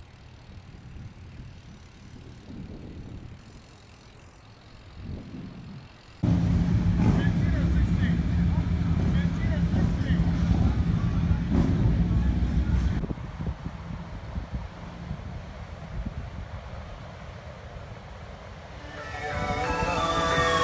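A faint rolling rumble of a BMX bike on pavement, then from about six seconds in a much louder street sound of traffic with a car engine and people's voices, which drops away after about thirteen seconds.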